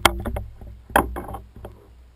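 Sharp knocks and clatter on a plastic sit-on-top kayak as the seated angler shifts and handles gear, over a low rumble. The loudest knock comes about a second in.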